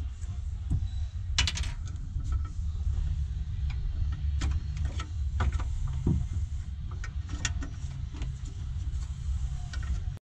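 Scattered small clicks and knocks of hardware and line clips being worked loose by hand on the bracket beside a car's washer-fluid tank, over a steady low hum.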